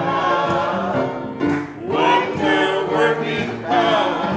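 Church choir of men and women singing together, holding sustained notes that change pitch from note to note.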